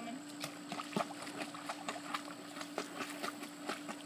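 Light, irregular splashing and water slaps as a small dog paddles in a swimming pool.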